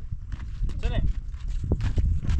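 Footsteps scuffing over loose stones and rubble, with a few sharp knocks of stone on stone and a steady low rumble. A short call from a voice comes about a second in.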